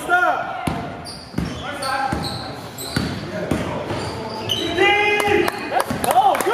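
Basketball dribbled on a hardwood gym floor, the bounces echoing in the hall, with short high squeaks from players' shoes and voices calling out on the court.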